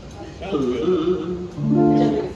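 A guitar chord struck near the end and left ringing, with a man's voice briefly before it.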